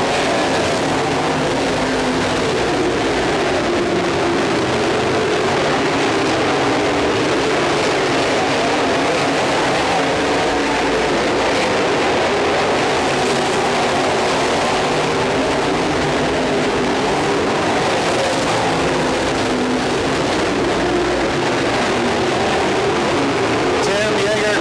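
A field of IMCA Dirt Modified race cars with V8 engines running at racing speed on a dirt oval. The engine noise is steady and dense, its pitch wavering up and down as the cars go through the turns.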